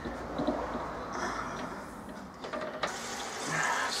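Running water, a steady rush with some splashing, from the brewing kettle and its immersion wort chiller hoses, with a sharp knock about three-quarters of the way in.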